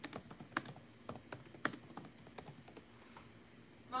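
Typing on a computer keyboard: irregular, faint keystroke clicks, several a second, that stop a little before the end.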